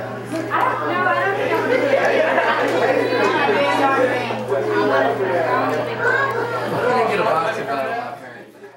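Several people talking at once: overlapping, indistinct conversational chatter, with a steady low hum underneath.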